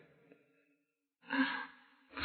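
Near silence, then about a second in a short breathy sigh or exhale from a person close to the microphone, lasting about half a second.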